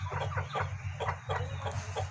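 A chicken clucking: a run of short clucks, about four a second.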